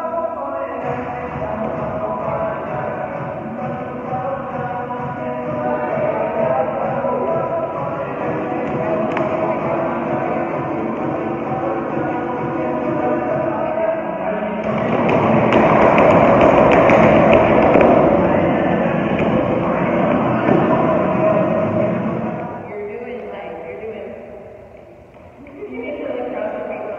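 Song with vocals playing for the dancers to practise to, with a muffled, narrow sound. It swells louder and fuller in the second half, then drops away briefly near the end before coming back.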